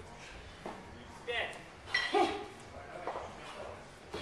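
Indistinct voices in a large gym hall, with a short high ring about two seconds in.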